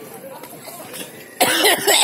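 Faint background chatter, then about one and a half seconds in a sudden loud burst of a person's voice close to the microphone.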